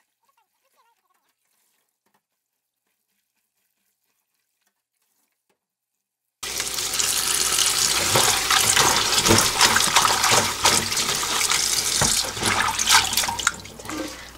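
Silent for about the first six seconds, then kitchen tap water runs in a thin stream into a glass bowl in a stainless steel sink. It splashes over green onion leaves as hands rub and wash them, with small sharp splashes and clicks throughout.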